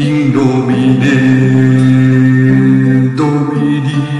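Sung choral music of a Latin Sanctus: voices hold one long chord, then move to a new chord about three seconds in.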